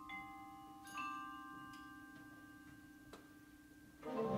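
Concert band mallet percussion playing a quiet passage: a few struck bell-like notes ring on at length over a soft held low tone.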